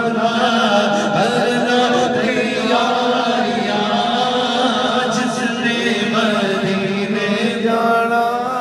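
A man chanting a naat, Urdu devotional poetry, into a microphone, in long held notes that waver in pitch.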